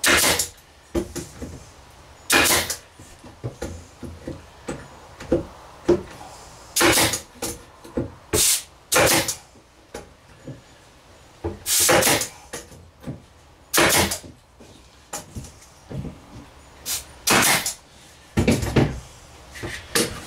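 Workshop handling sounds on a wooden cabinet frame: a string of sharp knocks, clicks and short rasps, a second or more apart, as one-handed bar clamps and tools are worked along the frame.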